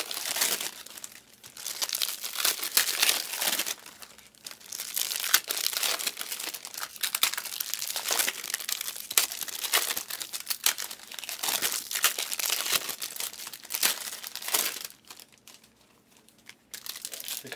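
Trading-card packaging crinkling as it is handled, in crackly bursts every second or two. It dies away about a second before the end.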